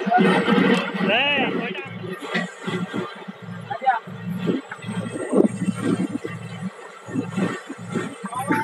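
Voices with music; one voice glides up and down about a second in.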